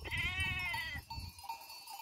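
A sheep bleats once: a single call of about a second whose pitch rises and then falls, in the first half.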